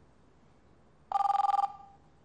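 Electronic telephone ringer giving one short warbling two-tone trill, about half a second long, starting about halfway through.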